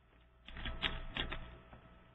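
A short run of computer keyboard keystrokes, several quick clicks over about a second.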